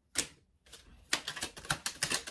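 Tarot cards being shuffled by hand: one short papery slap near the start, then from about a third of the way in a fast run of crisp card clicks.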